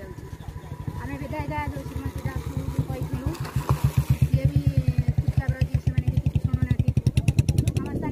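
A motorcycle engine running close by, a low, evenly pulsing beat that grows louder about three and a half seconds in and falls away at the end. A woman's voice speaks over it.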